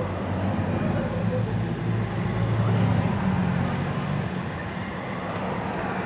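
Motor vehicle engine running, a low steady hum that swells about two to three seconds in and then eases off, over general street traffic noise.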